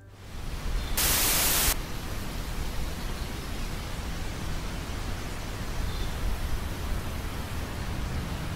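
Static hiss, like an old television between channels: a loud burst of hiss about a second in lasting under a second, then a steady quieter hiss with a low rumble underneath.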